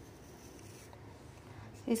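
Faint scratchy rubbing of fingers trickling and spreading coloured rangoli powder on a hard floor surface. A woman starts speaking at the very end.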